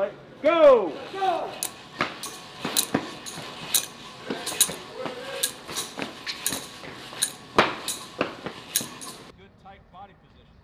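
Sharp metal clinks and clicks, one or two a second, from static-line snap hooks on the overhead steel anchor cable as paratroopers handle and move their hooked-up static lines. A brief loud shout rising and falling in pitch comes about half a second in. The sound cuts off suddenly shortly before the end.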